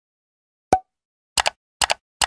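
Animated end-screen sound effects in otherwise dead silence: one short pop with a brief ring about 0.7 s in as a button appears, then two quick double clicks, like a mouse clicking, near the end.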